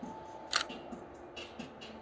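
A camera shutter fires once, a short sharp click about half a second in, over a faint steady tone.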